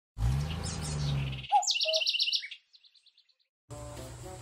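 Bird chirps: a low rising tone under high chirping, then about a second and a half in a quick run of bright repeated chirps that trails off in evenly spaced, fading echoes. Steady outdoor ambience starts just before the end.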